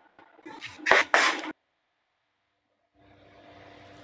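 A person sneezing: a short, sharp burst about a second in.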